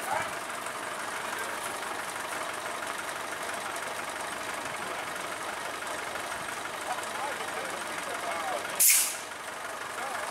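A sudden loud hiss of compressed air, about half a second long, a little before the end, over steady background noise and faint voices.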